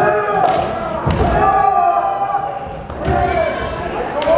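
Naginata bout: long drawn-out shouts (kiai) from the fencers, broken by several sharp knocks of strikes and stamping feet on the wooden floor, the loudest knock about a second in.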